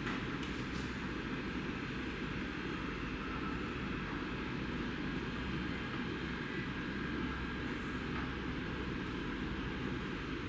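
Steady low background rumble that holds evenly throughout, with a few faint clicks just after the start.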